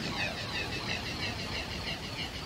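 Closing noise effect of a 1989 dark electro track: a steady wash of swirling, phasing noise with no beat or melody.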